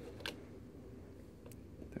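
Two faint, brief clicks of fingers and a small plastic shim against the rear mount and aperture lever of a Canon 50mm FD lens, about a quarter second in and about a second and a half in, over a low hum.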